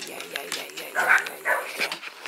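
Excited dogs giving a few short barks and yips.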